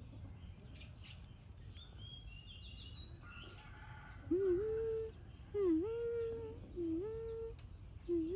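Birds chirping, with high rising trills about two to three seconds in. Then come four short tonal calls about a second apart. Each dips in pitch, then rises to a held note.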